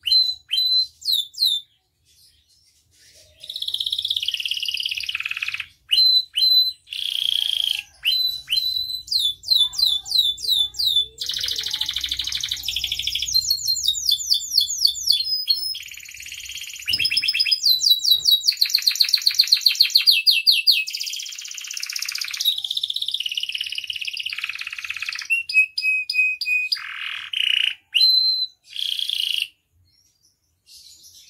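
Domestic canary singing in long phrases of fast trills and rapidly repeated high notes, broken by short pauses, with a brief gap about two seconds in.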